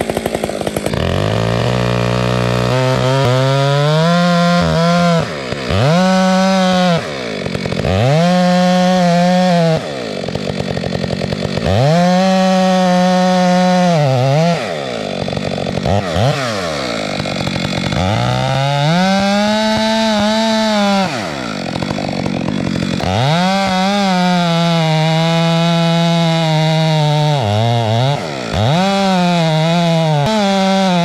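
Gas chainsaw cutting into the base of a dead fir trunk. It runs at high revs in stretches of a few seconds, dropping back briefly between them, about ten times.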